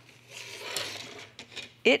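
Plastic machine-embroidery hoop being popped out of plush fabric: a faint rustling scrape of plastic and cloth lasting about a second.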